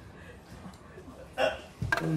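Mostly a quiet room, broken by a single short vocal sound from a person, a grunt or gasp, about one and a half seconds in, and a brief knock just before the end.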